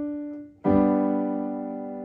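Keyboard in a piano sound: the last single note, D, fades out, then about half a second in a G major triad (G–B–D, root position) is struck and held, slowly decaying.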